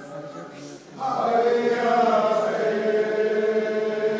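A group of voices chanting a dance song, with no drumbeat. About a second in, the singing swells much louder into long held notes.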